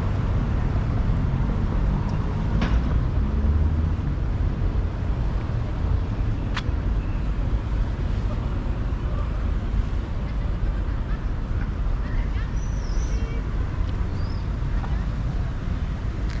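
City street ambience: a steady low rumble of road traffic, with faint voices of passers-by. A few short high bird chirps come about three-quarters of the way through.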